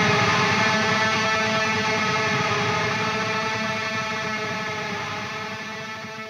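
The last chord of a heavy metal song, played on distorted electric guitar, held and slowly fading out with no new notes struck.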